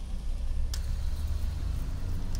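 Steady low rumble of a 2007 Ford Taurus heard from inside its cabin, with a single sharp click a little under a second in.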